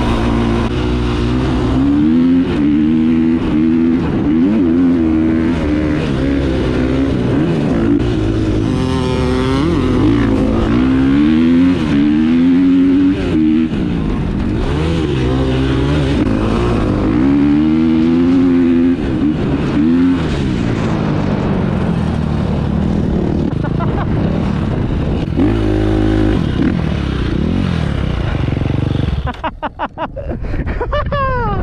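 A KTM 350 four-stroke single-cylinder dirt bike engine heard from the rider's helmet, revving hard, its pitch rising and falling again and again as the throttle opens and shuts through the dunes. About a second before the end the throttle is cut and the engine drops away as the bike comes to a stop.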